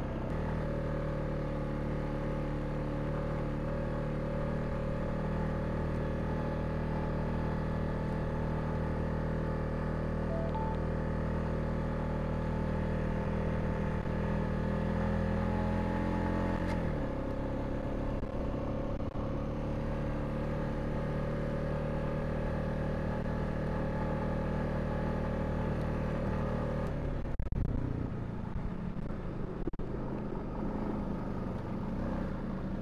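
Honda Rubicon ATV's single-cylinder engine running steadily under way on a dirt trail, its pitch dropping once about halfway through as it eases off, then holding steady again.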